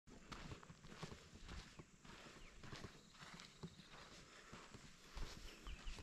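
Faint footsteps of a person walking, irregular soft steps a few times a second, at a very low level.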